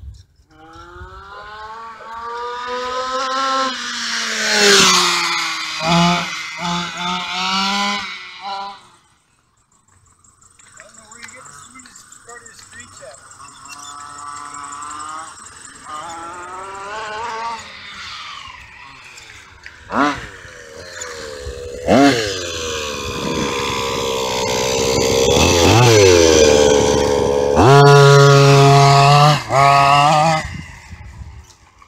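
Modified 30.5cc two-stroke gasoline engine of an HPI Baja radio-controlled buggy on high-speed runs, its buzz rising and falling in pitch with the throttle as it passes. It fades almost to nothing about nine seconds in, then returns with two sharp blips of revving around twenty seconds in, and holds a steady high note near the end.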